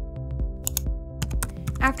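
A short run of computer keyboard keystroke clicks over steady background music, as a verification code is typed in; a voice starts right at the end.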